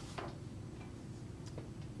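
Soft clicks from photo prints being handled at a table, over a steady low room hum: one brief sound just after the start and a sharper click near the end.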